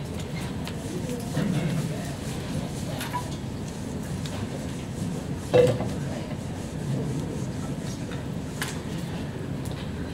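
Whiteboard eraser wiping the board in quick rubbing strokes, with a single knock about five and a half seconds in.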